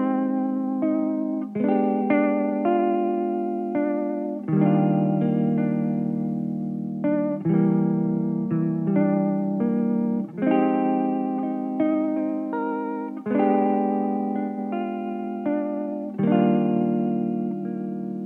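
Background music led by guitar, with a new chord struck about every three seconds and ringing on between.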